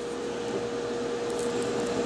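Steady whirring hum of a fan-like appliance, with a constant mid-pitched whine running under it.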